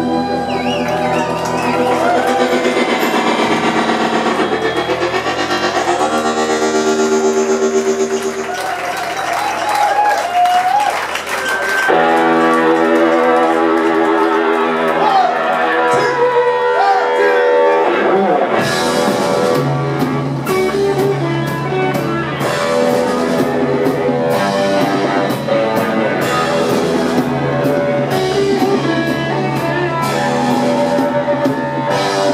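Live rock band playing an instrumental stretch: electric guitar, keyboard chords and a drum kit. The low end drops away briefly about two-thirds of the way through, then the band comes back in with a steady cymbal-driven beat.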